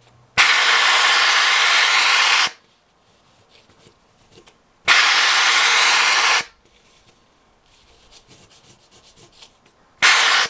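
McCulloch handheld steam cleaner releasing two bursts of loud hiss, each lasting about two seconds and cutting on and off abruptly, steaming the vinyl decal to soften its adhesive. Between the bursts, faint scraping of a razor-style blade on the fiberglass.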